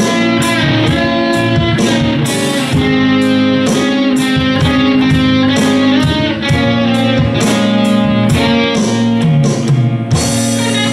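Live rock band playing a slow blues-rock ballad: electric guitars over bass guitar and a steady drum beat, in an instrumental passage without singing.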